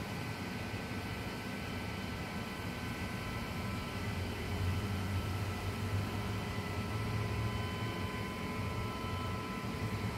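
Steady hum of a running electric motor-driven pump: a low drone with several thin, steady high tones above it. It is the jockey pump, which runs almost continuously to keep the firewater line pressurized.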